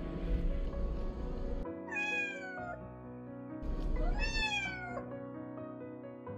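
A cat meowing twice, about two and four seconds in, each call falling in pitch.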